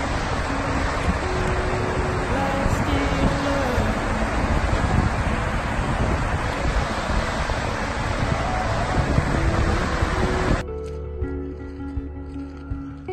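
A large waterfall's rushing water, a steady dense noise with background music faint underneath. The water sound cuts off about ten and a half seconds in, leaving only the music.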